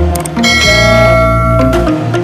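Intro music with a subscribe-animation sound effect: a couple of quick clicks, then a bright bell-like chime from about half a second in that rings for over a second before fading.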